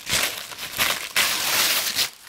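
Tissue paper being torn into strips, crinkling and tearing in three noisy bursts; the last and longest fills the second half.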